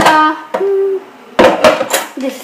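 A person's voice singing wordless notes, with a short held note about half a second in and a few more choppy sung sounds near the end.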